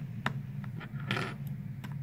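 Serrated knife chopping spinach on a plastic tray: a string of sharp taps of the blade against the tray, with a short scraping stretch just after a second in, over a steady low hum.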